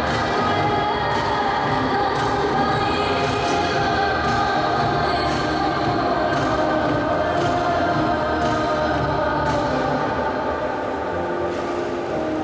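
Program music with choral singing, played over a rink's speakers, with brief sharp high ticks every second or so.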